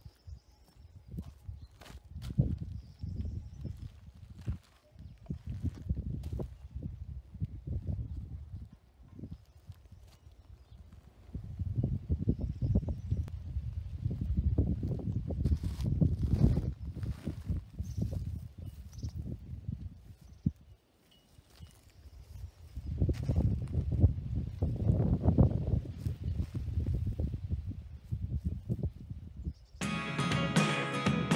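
Wind buffeting the microphone in uneven gusts, with a few light clicks and knocks.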